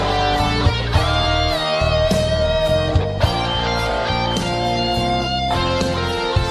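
Slow rock ballad music with no singing: a guitar plays held notes, some bending in pitch, over bass and drums.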